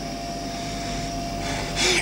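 Steady electronic hum and hiss with a faint held tone, which stops shortly before a sudden rise of noise near the end.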